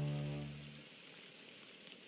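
Wine poured from a bottle into a pot of simmering lamb curry, with a faint hissing sizzle.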